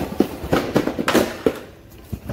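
Cardboard shipping cases of die-cast toy cars being shifted and lifted off a stack: a quick run of knocks and scrapes, loudest about a second in, dying away near the end.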